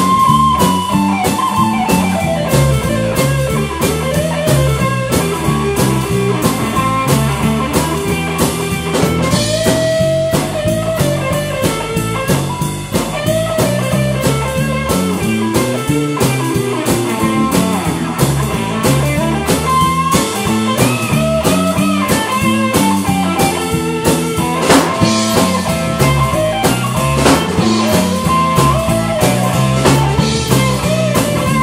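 Live blues band playing an instrumental passage: Stratocaster-style electric guitar playing lead lines with string bends over a steady drum-kit beat and electric bass.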